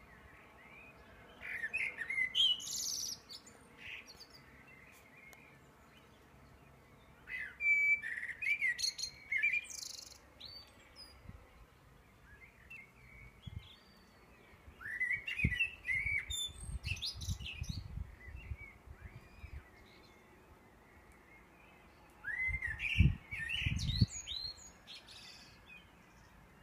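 A songbird singing in the pre-dawn dark: four separate phrases of two to three seconds each, made of quick, varied, gliding notes, with pauses of several seconds between them. Some low thuds sound under the last two phrases.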